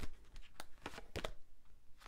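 A deck of oracle cards being shuffled by hand, giving a few short soft clicks of cards striking each other in the first half, then quiet card handling.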